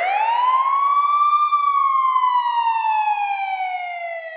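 A single siren wail: its pitch climbs steeply for about a second and a half, then sinks slowly and steadily.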